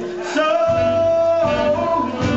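Live soul band music with a male lead vocal holding one long high note in the first half, then the melody moving on over the band.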